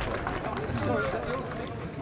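People talking in the background, several voices overlapping in low chatter; no music is playing.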